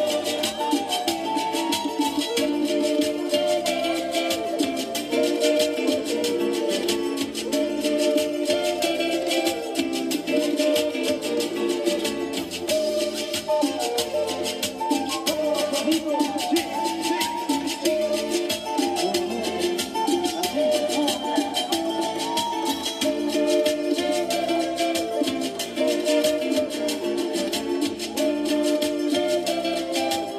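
Latin American instrumental music: a melody on wooden flutes over a steady beat with guitar and percussion accompaniment.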